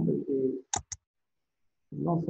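A man's voice trailing off in a drawn-out, pitched sound, followed by two brief sharp sounds about a second in, then dead silence until speech starts again near the end.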